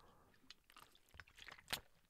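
Very faint sounds of a man drinking water from a bottle: a few small swallowing and mouth clicks, the loudest a little before the end.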